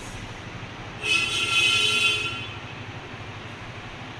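A single horn blast, like a vehicle horn honking, about a second in and lasting just over a second, over a steady background hiss.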